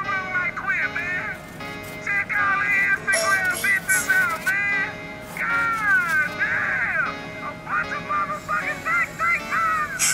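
Background music with a singing voice carrying a melody throughout.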